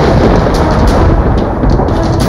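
A loud, sustained thunder-like rumble, a dramatic sound effect laid over the background score.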